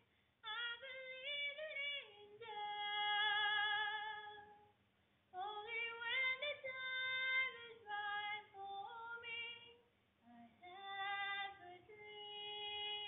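A woman singing solo on stage in a musical, in several long sung phrases with held, wavering notes and short pauses between them.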